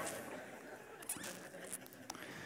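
Faint congregation laughter dying away after a joke, with a few soft clicks.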